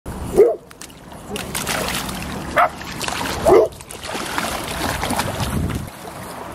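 A small Löwchen dog splashing as it wades through shallow water, with three short high-pitched calls standing out: about half a second in, at about two and a half seconds and at about three and a half seconds.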